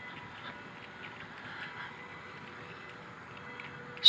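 Quiet outdoor background with faint, irregular footsteps of someone walking on brick paving.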